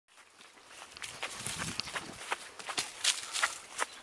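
Footsteps of a person walking briskly, sharp irregular steps about two to three a second over a faint steady hiss.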